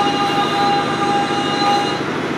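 Steady electronic whine of several held tones over a hiss, from a patient video played through loudspeakers, with no voice in it; the strongest tone fades out near the end.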